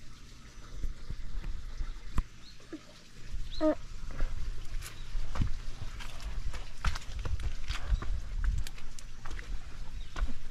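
Handling noise from a handheld camera being swung about: a fluctuating low rumble with scattered knocks and clicks, likely footsteps on rock among them. There is one brief squeak falling in pitch a little over three and a half seconds in.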